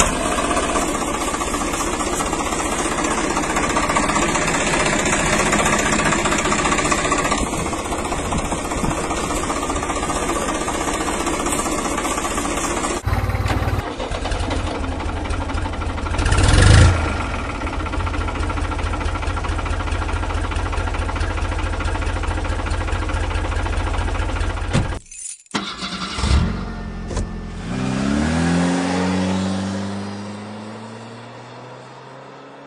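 Engine running steadily, switching abruptly to a different engine sound about halfway through and again near the end, where an engine revs up with a rising pitch.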